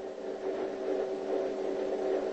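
A steady low hum with faint background noise, the kind heard under dashcam audio recordings.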